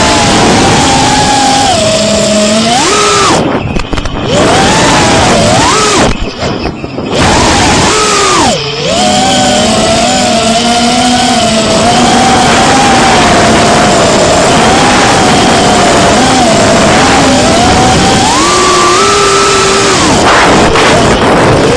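Brushless motors and propellers of a Geprc CineQueen FPV drone picked up by its onboard camera microphone: a loud whine over a steady hiss, its pitch rising and falling with the throttle. The sound drops briefly three times as the throttle is cut, around 4, 6 to 7 and 8.5 seconds in, and climbs in pitch near the end.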